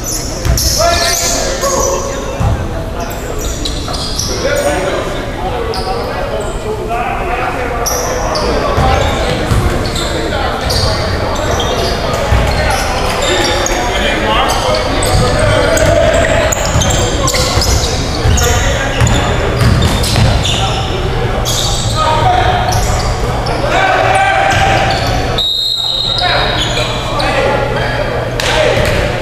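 Basketball game on a hardwood gym floor: a ball bouncing in repeated thuds, with players' voices calling out indistinctly, heard in a large gym hall.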